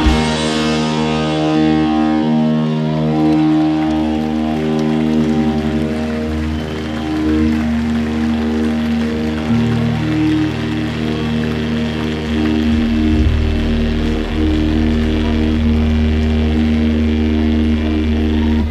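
Live rock band's electric guitars and bass ringing out in a long sustained, droning chord after the drums stop, the close of a song. The low notes shift about ten seconds in.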